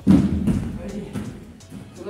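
A person lands a backflip on a folding foam gym mat: one heavy thud at the start, then a few softer thumps as he settles on the mat.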